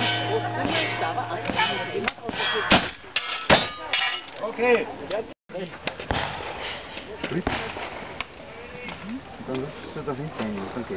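Gunfire on steel targets: the plates clang and ring, with the sharpest, loudest strikes near the middle. After a sudden break, only quieter clicks and handling noise.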